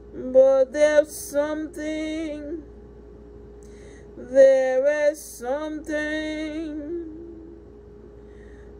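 A voice singing a worship song in two long phrases of held, sliding notes, the second starting about four seconds in, over a faint steady hum.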